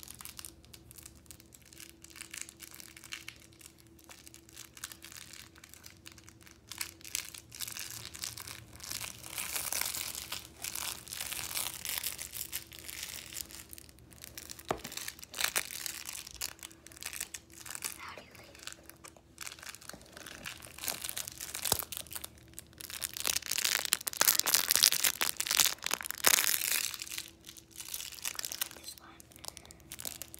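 Close rustling and crinkling handling noise with scattered clicks, coming in louder stretches about a third of the way in and again near the end.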